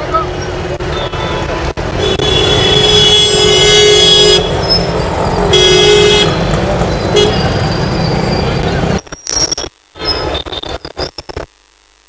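Street traffic with vehicle horns honking: one long honk about two seconds in and a shorter one near six seconds. After about nine seconds the sound breaks up, cutting in and out.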